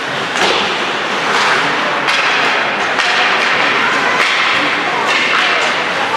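Ice hockey play on the rink: skates scraping the ice, with sharp knocks and clacks of sticks on the puck and ice about once a second, over a background of voices in the arena.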